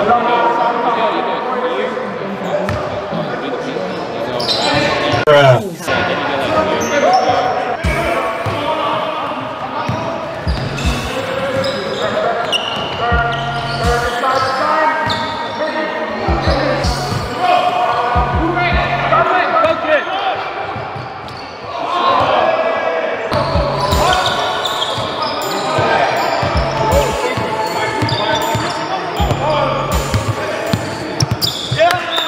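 Basketball game sound in a large echoing sports hall: a ball bouncing on the court and indistinct shouts and chatter from players and spectators. From about eight seconds in, a hip-hop beat with a repeating bass runs underneath.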